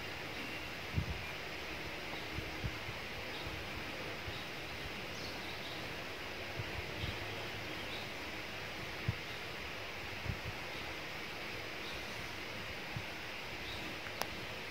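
Outdoor woodland ambience: a steady even hiss with a few faint bird chirps and occasional brief soft low thumps.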